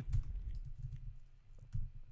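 Computer keyboard being typed on, a few scattered keystrokes.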